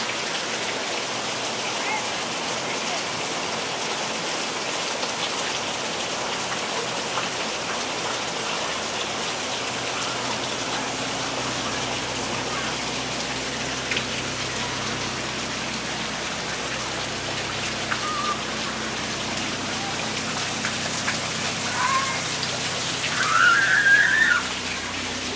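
Steady rain falling, an even hiss of drops on surfaces, with a brief faint voice near the end.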